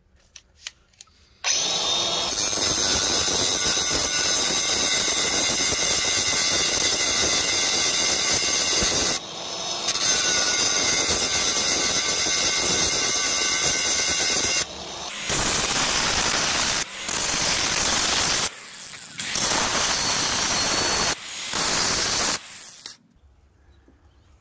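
Angle grinder grinding steel rivet heads flush with a rusty frame crossmember, so the rivets can be punched out more easily. A few clicks come first, then the grinder runs steadily with a high whine for about thirteen seconds with a brief dip partway. It finishes in several short bursts and stops shortly before the end.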